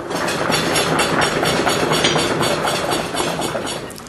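Audience applause: a dense clatter of many hands clapping, easing off a little near the end. It is the audience's show of support for answer A in a quiz vote.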